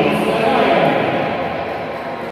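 Several people's voices shouting and calling out at once courtside during a basketball game.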